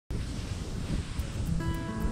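Rushing noise and low rumble of a plastic sled being towed over snow, then background music with long held notes comes in about one and a half seconds in.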